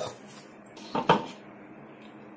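A steel spoon set down in a steel colander of soaked chana dal, giving one brief clink about a second in, as the rattle of dal poured into a steel mixer jar dies away.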